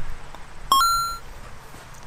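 An electronic two-note beep, a short lower note stepping straight up to a higher held note, about half a second long.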